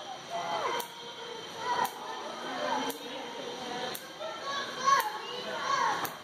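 Indistinct background chatter of children and adults, with a short click repeating about once a second.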